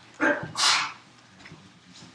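A short, loud vocal outburst about a quarter second in: a brief pitched sound followed at once by a sharp hissing rush lasting about half a second.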